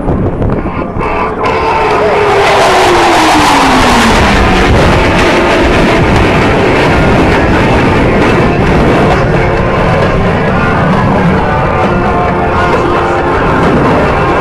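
Blue Angels F/A-18 Hornet jets passing low and fast, a loud steady roar with a pitch that falls for about three seconds soon after the start as they go by. Music plays underneath.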